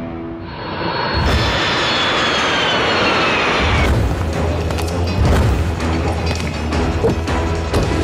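A jet aircraft passing overhead: its engine rush and whine fall in pitch over about three seconds, over background music. A low steady rumble follows in the second half.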